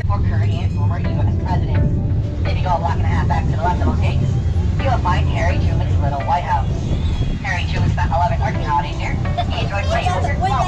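Steady low rumble of the open-air Conch Train tour tram moving along the street, with indistinct talking over it.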